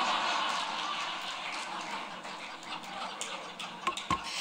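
Audience applauding, loudest at first and slowly dying away.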